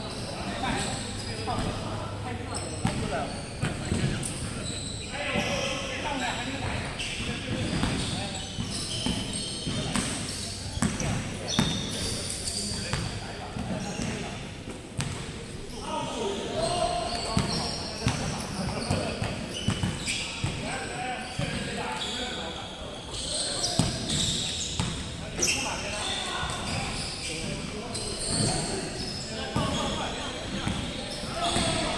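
A basketball bouncing on a hardwood court during play, with repeated knocks and players' voices, echoing in a large hall.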